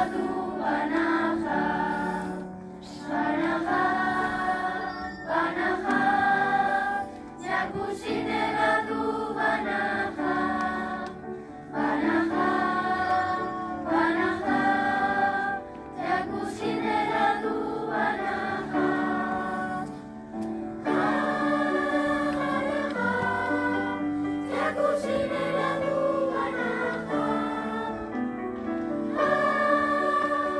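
Children's choir singing, in phrases of held notes with brief pauses for breath between them.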